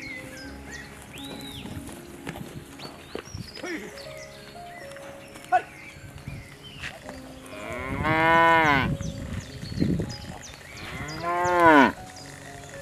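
Zebu cattle mooing: two long, loud moos that rise and fall in pitch, the first about eight seconds in and the second near the end.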